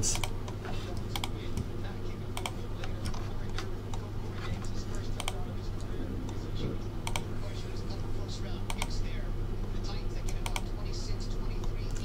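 Computer keyboard and mouse clicks, scattered irregularly as a list is pasted into a web form and a button is clicked again and again. A steady low hum runs underneath.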